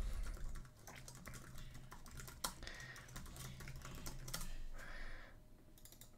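Faint, irregular keystrokes on a computer keyboard, in quick runs, over a low steady hum.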